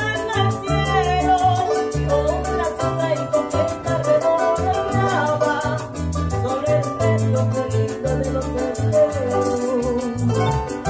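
Small live band playing: an acoustic guitar strummed and an electric bass, with a shaker keeping a steady fast beat and a woman singing into a microphone.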